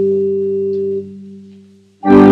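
Church organ holding a low chord, released about a second in and dying away.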